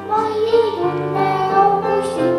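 A young girl singing a children's song into a microphone over a recorded backing track.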